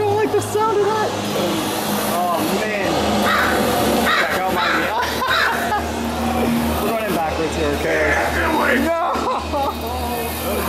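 Inside a haunted-house walkthrough: untranscribed voices and shrill, wavering cries over a low steady hum, with some music in the mix.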